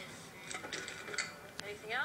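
Light kitchen clatter: a few short clinks and knocks of dishes and utensils, with a voice starting near the end.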